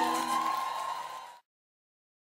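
End of a live band's song: the last held chord fades under crowd cheering, with one long high whoop held over it, then the sound cuts off suddenly about one and a half seconds in, leaving dead silence.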